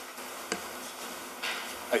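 Room tone picked up by a meeting-room microphone, a steady faint hiss, with a small click about half a second in. Near the end there is a breath just before speech begins.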